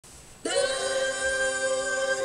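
A voice holding one long chanted note, starting suddenly about half a second in: the Zulu call that opens the song.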